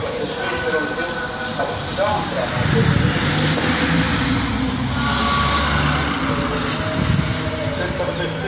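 Male voices chanting in slow, long-held notes, over a low rumble that swells for a few seconds in the middle.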